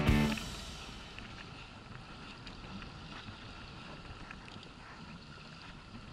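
Background music that stops within the first second, then faint, steady wind and water noise around a small inflatable boat on open sea.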